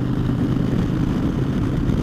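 2009 Harley-Davidson Dyna Fat Bob's Twin Cam 96 V-twin, fitted with Vance & Hines Short Shots exhaust, running steadily at cruising speed under a rush of wind noise.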